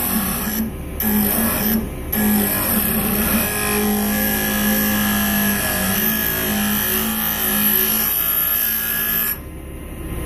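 Gorton model 375 tool grinder grinding a radius into a form tool bit: a steady motor hum under the high hiss of the wheel cutting steel. The hiss drops out briefly about a second in, again at two seconds, and near the end.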